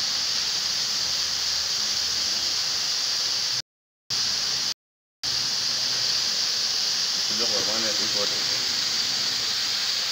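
Several CO2 fire extinguishers discharging together: a steady, loud hiss of carbon dioxide escaping as the cylinders are emptied. The sound cuts out completely twice, for about half a second each, around four and five seconds in.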